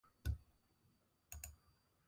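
Sharp clicks at a computer desk, each with a low knock: one click, then a quick double click about a second later.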